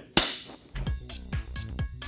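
A film clapperboard snapped shut once: a single sharp clap. Under a second later, electronic music with a steady kick-drum beat of about two thumps a second begins.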